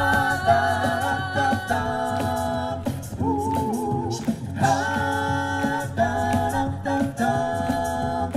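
An a cappella vocal group singing through microphones, with held close-harmony chords that change every second or so over a sung bass line. Short, sharp vocal-percussion hits cut through.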